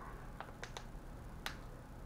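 Four faint, sharp clicks of a plastic lure package being handled.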